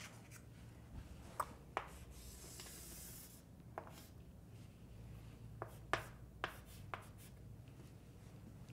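Chalk writing on a chalkboard, faint: a longer scratching stroke a couple of seconds in and several short, sharp taps of the chalk against the board, most of them in the second half.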